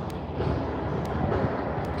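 Street traffic: an even rumble of vehicles, with a few light ticks.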